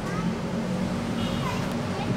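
Steady low rumble of distant road traffic, with faint voices in the background.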